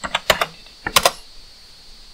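Computer keyboard keys being pressed: a quick run of clicks in the first half second, then a louder cluster of clicks about a second in.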